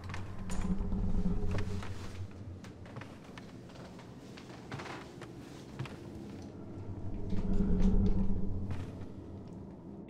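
Low droning suspense sound design that swells twice, about a second in and again near the end, with scattered faint clicks and creaks between.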